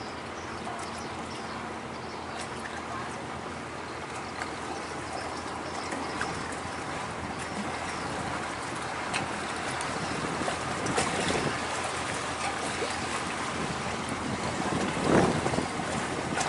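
Steady rushing noise of a large container barge under way on a canal: its engine and the water wash blend together and grow slowly louder as it draws near.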